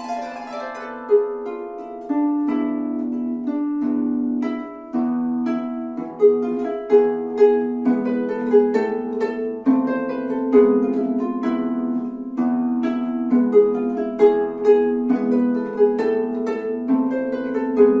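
Celtic harp being played by plucking: a melody of separate notes, each with a sharp start and a ringing decay, over sustained lower notes.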